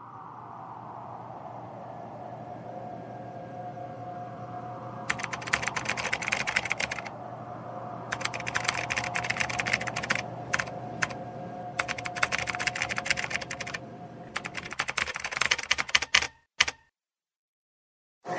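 Computer keyboard typing sound effect, quick keystrokes in several bursts of a second or two each, over a steady ambient drone. The typing stops and the sound cuts to silence near the end.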